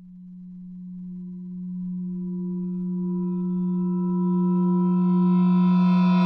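A synthesized suspense drone on the soundtrack: one steady low tone that swells steadily louder, growing brighter as higher overtones build in above it.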